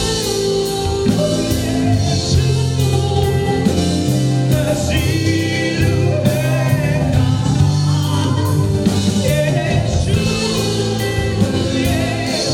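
A live worship band playing and singing a praise song: voices at the microphones over acoustic guitar and keyboard, with sustained bass notes and a steady beat.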